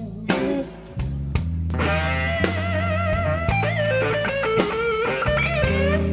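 Slow blues band: an electric guitar plays a lead fill with string bends and wide vibrato over bass and drums, after a brief lull under a second in.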